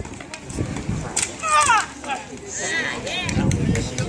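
A high-pitched voice cries out with a falling pitch about a second and a half in, followed by several shorter high cries, with a few sharp clacks in between.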